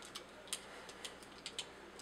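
A few faint, irregular plastic clicks and taps as the plastic sword of a TFC Toys Ares combiner figure is handled and fitted to the figure's hand.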